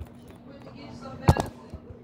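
A single sharp knock a little over a second in, loud and sudden, with a child's voice faint before it.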